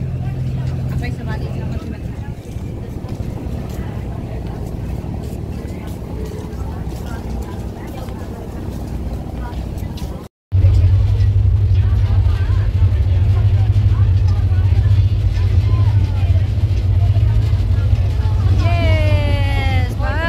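Ferry engine running with a steady low drone, heard from on deck. After a break about halfway through, the drone is louder and deeper. A voice comes in near the end.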